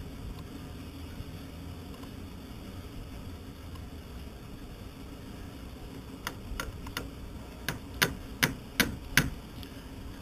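A run of sharp clicks and taps from hand tools being handled against the hull, beginning about six seconds in, the loudest coming roughly every 0.4 s near the end. A steady low hum lies underneath.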